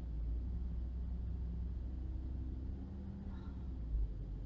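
Low, steady rumble of a car's engine and road noise heard from inside the cabin while driving, with a faint hum, and a brief low thump near the end.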